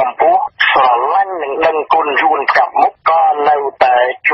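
Continuous speech: a voice reading the news in Khmer, with only short pauses between phrases.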